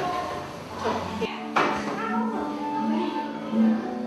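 A man's voice finishing a sentence, then instrumental backing music for a children's song starting suddenly about a second and a half in, with steady held notes.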